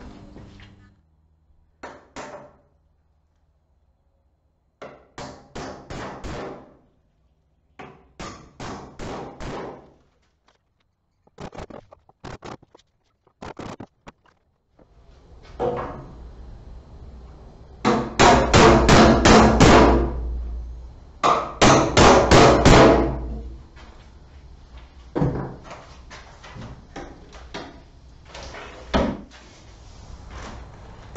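Hammer nailing plastic electrical boxes, which come with their nails already set, onto wooden wall studs. It comes in repeated runs of quick blows, with the two loudest runs about two-thirds of the way through.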